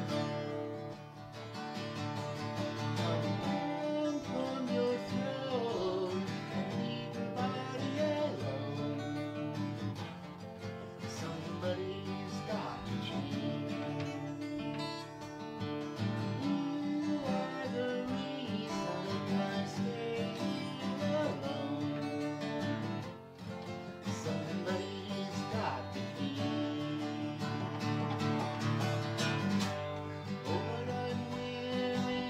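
Acoustic guitar strummed steadily, with a man singing along.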